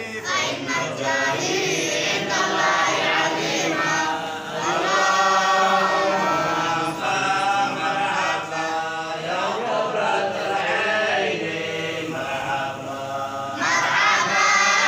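A group of voices chanting together in unison, with long held, gliding notes.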